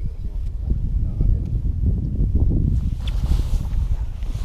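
Wind buffeting the action camera's microphone: a rough low rumble throughout, with a lighter hiss joining about three seconds in.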